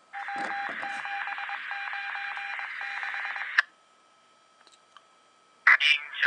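Police radio scanner feed playing through an iPod touch's small speaker: a burst of radio noise with a repeating, interrupted beep-like tone for about three and a half seconds, cut off by a click. After a quiet stretch, a dispatcher's voice starts near the end.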